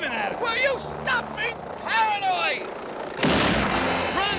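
Men's voices shouting and wailing in long, falling cries, then about three seconds in a sudden loud burst of noise breaks in and carries on.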